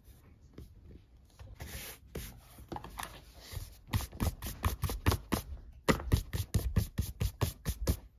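An eraser rubbing on sketchbook paper, then a hand brushing eraser shavings off the page in quick, scratchy strokes, about five a second, from about halfway through.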